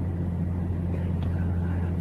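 A steady low hum with faint background hiss.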